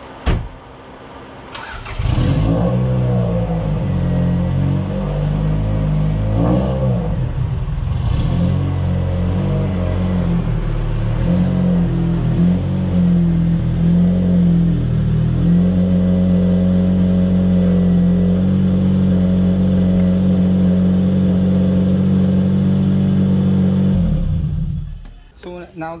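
Toyota MR2 SW20's four-cylinder engine starting about two seconds in, revving up and down as the car is moved, then running at a steady speed until it is switched off near the end.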